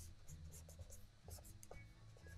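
Faint scratching of a pen drawing a series of short strokes on watercolour paper.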